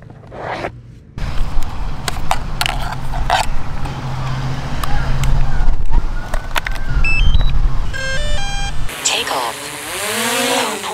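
Low wind rumble on the microphone with sharp clicks and knocks from handling a hard drone case and its controller. About seven seconds in come a short rising run of electronic beeps and then a quick string of startup beeps. Near the end the DJI Mavic Air 2's propeller motors spin up with a whir that bends in pitch.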